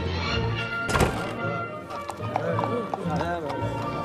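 Music, with a dubbed horse sound effect of a horse whinnying and hooves clopping. A single loud sudden crash comes about a second in.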